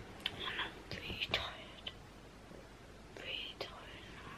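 A girl whispering quietly in short phrases, with a few faint clicks between them.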